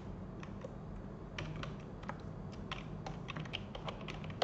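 Scattered keystrokes on a computer keyboard, a few spread out and then a quicker run near the end, over a faint steady low hum.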